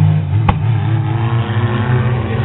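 Figure-8 race cars' engines running together, their note dropping slightly as a car eases off, with a single sharp click about half a second in.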